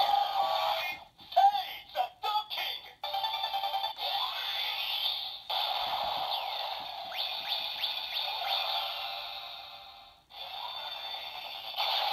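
Bandai DX Seiza Blaster toy playing the Rashinban Kyutama's electronic sound effects and jingle music through its small built-in speaker, with no bass. The sound breaks off briefly near the end and starts again.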